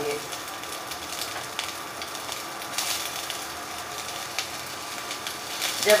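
Chopped onion sizzling in hot oil in a non-stick wok, a steady sizzle with small crackles.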